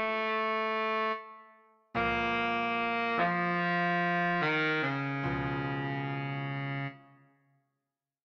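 Baritone saxophone part played note by note from the score: a held note that dies away about a second in, then after a short pause a string of long held notes stepping through several pitches, fading out near the end.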